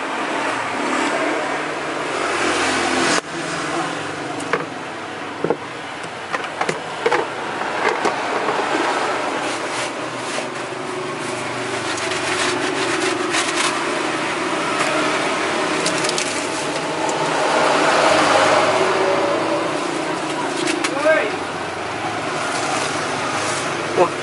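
Street traffic going by, one vehicle swelling louder and then fading about two-thirds of the way through, with scattered clinks and scrapes of a serving ladle against curry pots and a plate.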